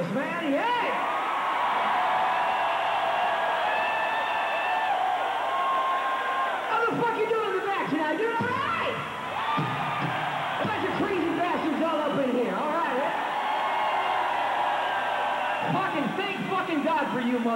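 Large concert crowd cheering and whooping, many voices yelling and holding long shouts over a steady roar.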